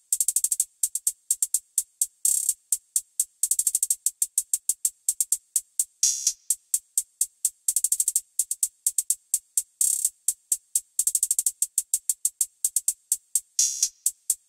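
Programmed trap hi-hat pattern played alone from a sampled drum kit: crisp electronic hi-hat ticks at 127 BPM broken every bar or so by fast rolls, with a few hits pitched lower.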